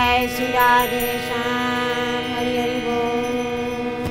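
Harmonium holding a steady chord as a kirtan comes to its close, with no drumming. A woman's voice sings a short phrase over it in the first second or so.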